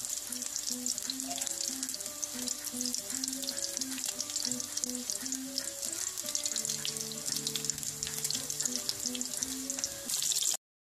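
Steady crackling sizzle of food deep-frying in hot oil, with a soft melody of short notes underneath.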